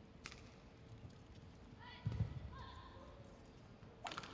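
Brief squeaks and low thuds from players' shoes on the court mat, clustered about two seconds in, with a single click shortly after the start.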